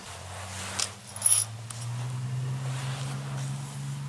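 A steady low hum with a few sharp metallic clicks and a short clatter, the loudest about a second in.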